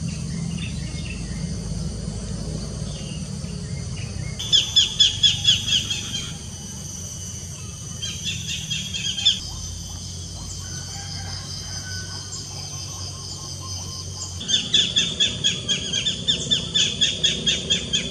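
A bird calling in fast runs of repeated high chirps, about five notes a second, in three bursts: about four seconds in, again around eight seconds, and through the last few seconds. Under it runs a steady high insect drone and a low rumble.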